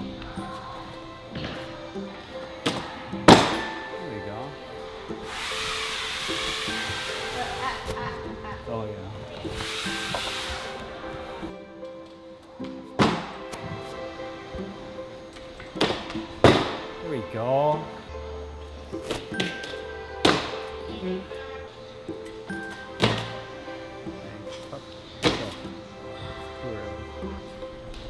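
Background music, with about half a dozen sharp thuds of bare feet landing on a balance beam, the loudest about three seconds in. Two stretches of hiss come around six and ten seconds in.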